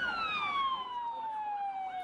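Emergency vehicle siren: a single wailing tone that slides slowly and steadily down in pitch, falling by about half.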